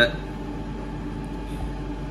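Steady low hum of a commercial kitchen's background machinery, with no distinct sounds over it.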